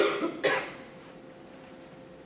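A person coughing twice, the two short coughs about half a second apart.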